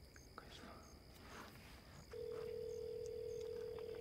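A telephone tone from a mobile phone as a call is placed: one steady beep held for about two seconds, starting about halfway in.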